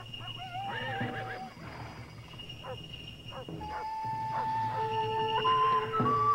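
Wild animal calls: a wavering, howl-like cry in the first second and a half, then several short swooping cries. From about three and a half seconds in they sound over long held notes of music.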